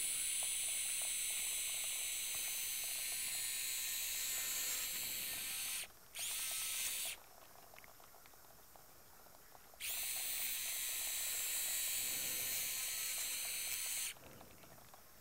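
A 45-degree powered microfracture pick drilling holes into the subchondral bone at the base of a knee cartilage defect: a steady high-pitched whirring hiss. It stops briefly about six seconds in, runs for about another second, pauses for about three seconds, then runs again.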